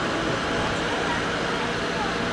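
Steady road traffic noise from a busy street, an even rush with no single vehicle standing out.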